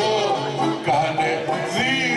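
Live Greek folk music for the kagkelari circle dance: a violin playing a wavering melody with voices singing the verses.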